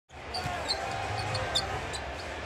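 Arena sound of a basketball game: crowd murmur under short high sneaker squeaks on the hardwood and a ball being dribbled, fading in at the very start.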